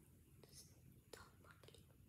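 Near silence: room tone with a few faint clicks, as of small plastic beads being handled while a bracelet is strung.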